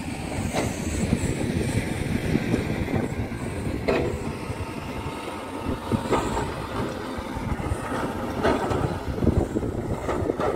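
Heavy diesel earthmoving machinery, dump trucks and an excavator, running with a continuous low rumble. Several sharp knocks and clanks come through it at scattered moments.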